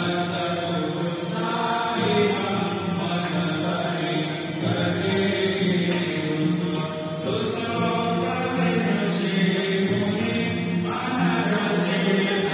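Devotional mantra chanting with music.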